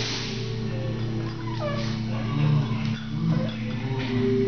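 A dog making a few short whining calls that fall in pitch while play-wrestling with another dog, heard over background music.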